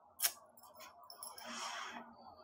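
A faint click, then about half a second of soft rustling as a kitten scrambles across bedding and leaps off a bed after a thrown toy.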